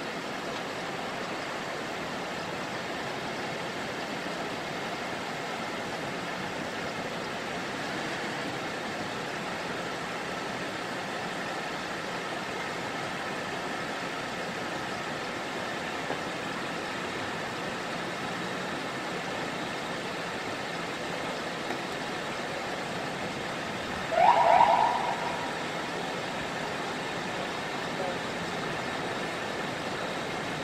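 Steady street noise of idling police cars, broken about three-quarters of the way through by a single short rising whoop from a police siren.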